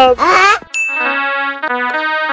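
A man's voice for the first moment, then a bright ding sound effect about three-quarters of a second in, followed by held chords of keyboard-like background music whose notes shift a few times.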